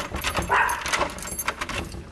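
Keys clicking and jangling in a door lock as it is unlocked, with a short excited call from a small Pomeranian-type dog about half a second in.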